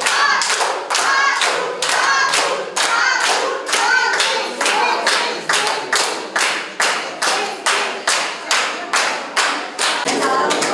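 A crowd clapping in unison, about three claps a second, with voices chanting along in the first few seconds. The chanting drops away and the claps stand out more sharply toward the end.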